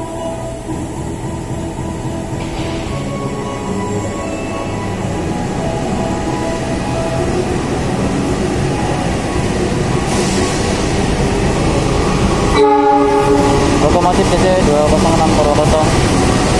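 Diesel locomotive hauling a passenger train into the station, its rumble growing louder as it draws near and passes close by. About three quarters of the way in, a loud horn-like sounding of steady tones starts suddenly and continues as the train rolls past.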